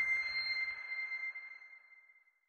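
A single high, bell-like ping from the closing soundtrack: one clear tone ringing on and fading away steadily.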